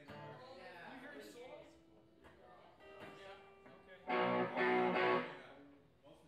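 Guitar chord strummed loudly twice about four seconds in, ringing for about a second and then fading, after a quieter held note.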